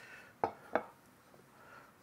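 Two short knocks, about a third of a second apart, as a ceramic plate is set down on a wooden cutting board.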